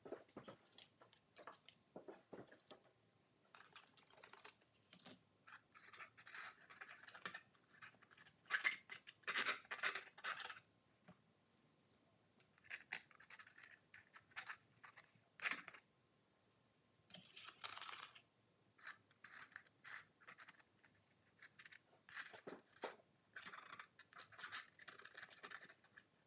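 A palette knife scraping acrylic paint across a canvas in short, irregular strokes. The sound is faint, with the longest and loudest strokes about nine seconds in and again about seventeen seconds in.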